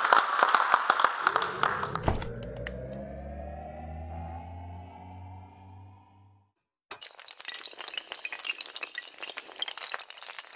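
Applause dying away over the first two seconds, overlapped by a synthesized rising tone of several pitches that fades out by about six and a half seconds. After a short silence, a sound effect of shattering glass and clinking pieces runs on, matching the tiles of the animated logo crashing together.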